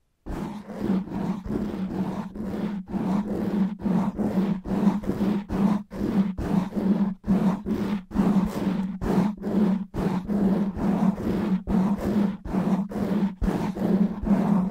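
Fast, rough scratching of natural fingernails on a foam microphone windscreen, heard right at the mic as a dense, growling rasp. It starts after a brief silence at the very beginning and runs in quick strokes with short breaks a couple of times a second.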